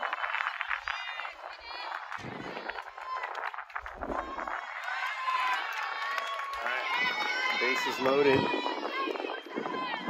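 Many high young voices of a softball team calling out and cheering over one another from the dugout, some notes held longer in the second half.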